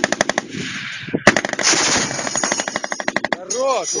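ZU-23-2 twin 23 mm anti-aircraft autocannon firing two long, rapid bursts at close range, with a brief pause about a second in. A man's voice comes in near the end.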